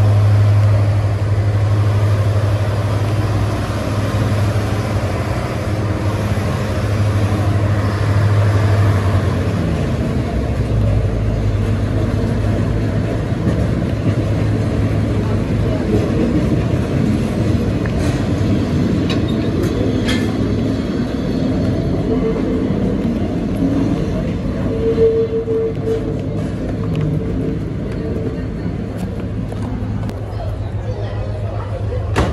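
Heritage passenger train moving along a station platform: a steady low hum at first, then the rumble of the train running on the track.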